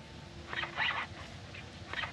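Polystyrene foam being rubbed, squeaking in short bursts: one about half a second in and another starting near the end.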